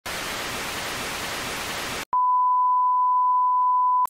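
Analogue TV static hiss for about two seconds, cutting off abruptly, followed by a steady single-pitch test-tone beep that runs on under colour bars.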